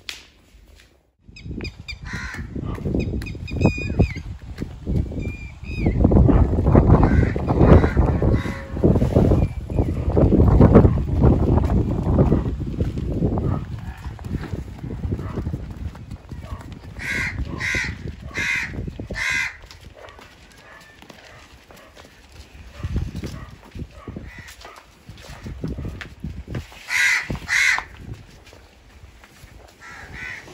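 Birds calling in a rural farmyard: four short calls about half a second apart midway through, and two more near the end. A loud low rumble fills roughly the first half.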